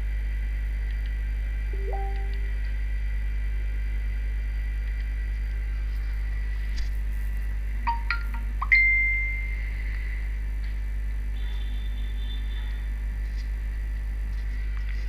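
A steady low electrical hum, with a few short electronic beeps. The loudest is a single high chime about nine seconds in that rings out for about a second.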